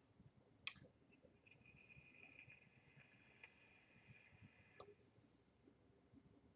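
Vape mod firing a rebuildable dripping atomizer's coil during a drag: a faint click, then about four seconds of faint steady sizzling hiss from the coil, which has been over-dripped with e-juice, ending with another click.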